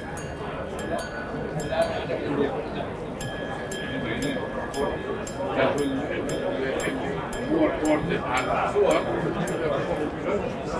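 H. Moser & Cie minute-repeater wristwatch chiming the time: a long run of quick, evenly spaced gong strikes, about four a second, with a short pause in the first couple of seconds.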